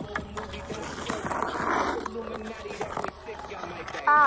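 Ice skate blades scraping on pond ice close by, with one longer hissing scrape about a second and a half in.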